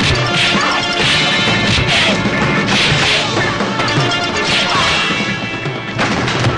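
Fight-scene sound effects from a martial-arts film: a run of hits and crashes, about one a second, over the film's music score.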